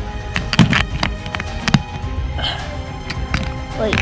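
Background music, with scattered irregular clicks and scrapes of a wire pick working inside an old chest's metal latch lock.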